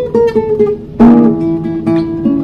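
Nylon-string classical guitar played in a bossa nova style: a few plucked single notes, then a full chord struck about a second in and left to ring under further notes.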